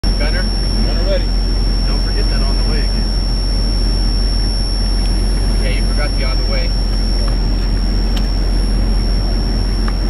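Steady, loud rumble of a HMMWV running, with a constant high-pitched whine over it and brief snatches of voices.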